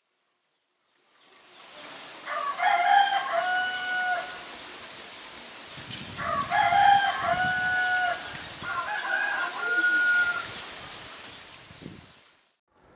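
Rooster crowing three times, each a long held call, over a faint outdoor background that fades in after about a second of silence.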